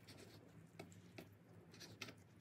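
Faint knife cutting through raw chicken breast on a wooden cutting board: a few soft taps of the blade on the board with light scraping, over a low steady hum.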